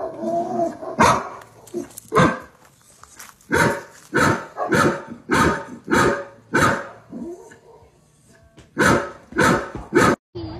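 A dog barking repeatedly in single barks, a fast run of them just over half a second apart, then a short pause and two more near the end.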